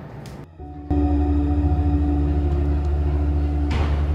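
Quiet room tone, then about a second in a music track starts abruptly with a heavy bass and steady held tones.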